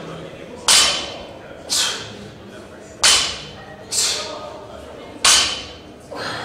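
Loaded barbell clanking five times about a second apart during warm-up deadlift reps: the weight plates knock and rattle on the bar, each clank with a short metallic ring.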